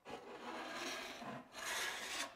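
Wide flexible steel skimming blade scraped across wet joint compound on a drywall board, pressed down to bury the fibreglass tape: a scraping rasp in two strokes, the first about a second and a half long, the second shorter after a brief break.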